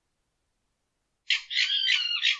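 A fox and a border terrier calling at each other: a sudden run of rapid, harsh, high-pitched calls that starts about a second and a half in.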